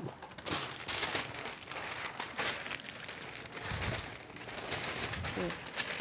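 Thick, silicone-coated parchment paper rustling and crinkling irregularly as a sheet is handled and folded in half.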